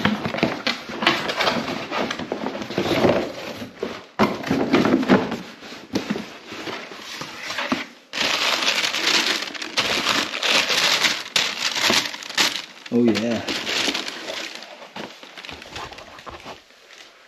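Cardboard packaging and tissue paper rustling and crinkling as a shoebox is pulled from a cardboard mailer and opened, and a new running shoe is lifted out of its paper wrapping.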